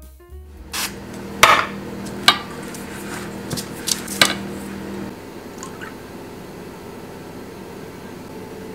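Metal round cake pans being handled on a countertop: a handful of sharp clinks and knocks over the first half, the loudest about one and a half seconds in, over a low steady hum, which then gives way to quieter room noise.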